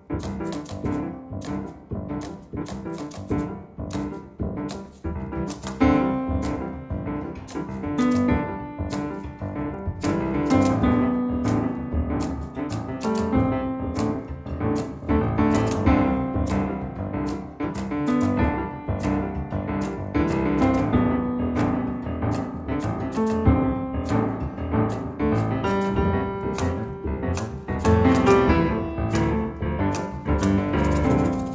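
Two grand pianos playing a jazz duet live. Short, detached notes fill out into held chords about six seconds in and into a fuller, louder texture from about ten seconds on.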